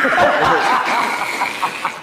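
Several men laughing loudly together, their laughs overlapping.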